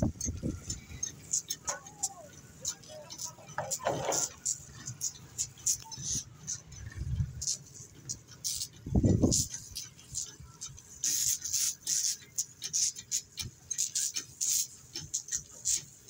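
Shovels and rakes scraping and clinking through loose stone chippings, a busy patter of short sharp scrapes, with men's voices calling out now and then and a brief louder low burst about nine seconds in.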